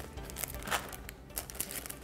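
Clear OPP plastic film bag crinkling as it is handled, a few short rustles, over quiet background music.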